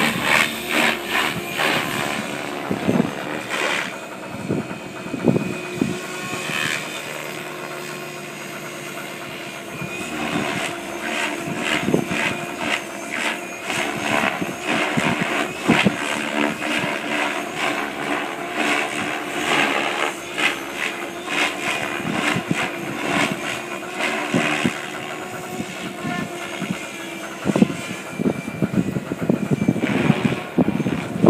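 KDS Agile 7.2 radio-controlled helicopter flying overhead: a steady rotor and motor whine with rapid, repeated blade chops that swell and fade as it manoeuvres, briefly quieter about a third of the way through.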